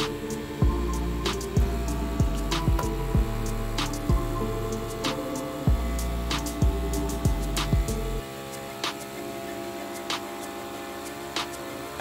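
Background music with a steady beat; its bass line drops out about eight seconds in.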